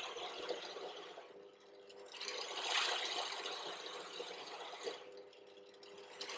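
Benchtop pillar drill running with a hole saw cutting into a block of hardwood: a steady motor hum under the rasping of the cut. The cutting noise eases about a second and a half in, is loudest around three seconds in, then tapers off.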